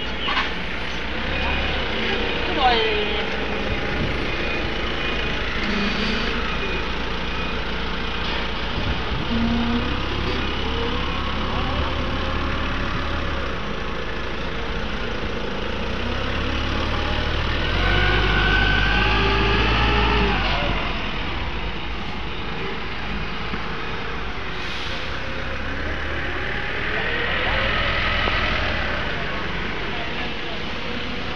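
A vehicle engine running steadily, getting louder for a few seconds a little past the middle, with people's voices in the background.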